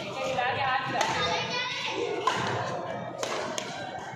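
Badminton rally: several sharp racket hits on the shuttlecock, with onlookers' voices chattering in the background.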